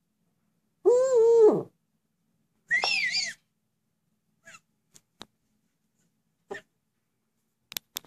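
Young female Eurasian eagle-owl giving greeting calls: about a second in, a loud drawn-out call that wavers and drops in pitch at the end; then a shorter, much higher squealing call with two rises. A few faint clicks follow.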